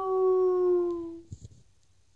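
A woman's imitation dog howl: one long 'oooo' note, held and slowly sinking in pitch, fading out about a second in. It is a human howl meant to set a malamute howling.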